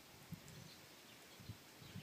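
Near silence: faint outdoor background with a couple of soft, brief low bumps.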